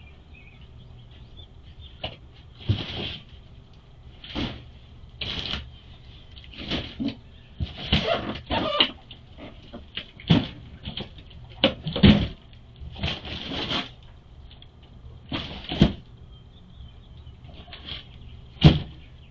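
A string of irregular knocks and clunks, roughly one every second, from things being handled and moved about during a search for lost keys.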